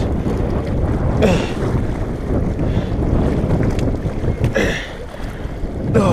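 Strong wind buffeting the microphone in a steady low rumble, with choppy lake waves washing against shoreline rocks underneath.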